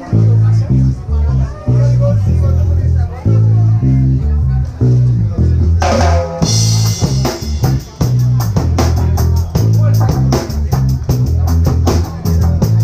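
Live band playing an instrumental passage: an electric bass line under electric guitar. About halfway the full drum kit comes in with a cymbal crash and steady, evenly spaced cymbal strokes.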